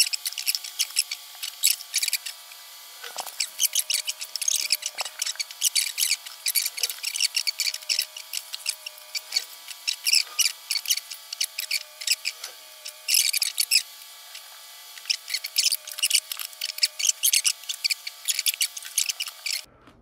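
Quick, thin clicks, taps and rubbing noises of hands working small craft pieces: a brush dabbing in a plastic paint palette and plastic garnish being handled and pressed into place. Faint steady tones run underneath.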